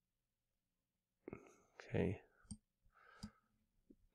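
A man's quiet voice: a soft spoken "okay" and breathy murmurs after about a second of silence. A couple of faint clicks fall among them, typical of a computer mouse.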